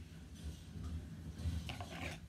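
Scissors cutting craft felt: faint snipping and handling clicks, with a few sharper clicks near the end.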